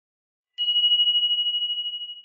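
Notification-bell sound effect: a single high ding about half a second in, ringing on in one pure tone as it slowly fades.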